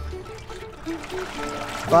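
Peanut oil pouring in a stream from a plastic jug into a metal fryer pot, under light background music.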